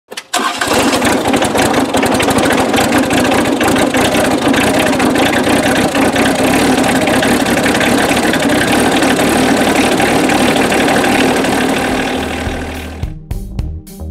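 Yanmar SA324 compact tractor's three-cylinder diesel engine starting within the first half second and then running steadily. It fades out near the end as music comes in.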